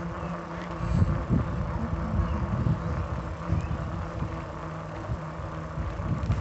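Wheels rolling along a concrete sidewalk: a low, uneven rumble with small knocks over the surface, under a steady low hum.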